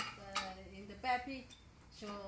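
Dishes and a utensil clinking at a table laid with stone mortars and clay bowls: two sharp clinks in the first half second.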